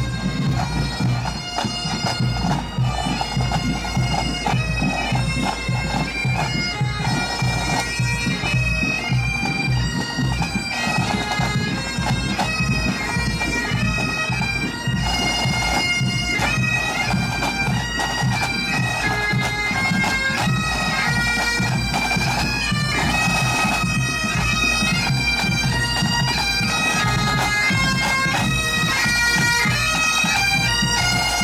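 Pipe band playing on the march: Great Highland bagpipes playing a tune over their steady drones, with drums keeping time beneath. The band grows a little louder as it approaches.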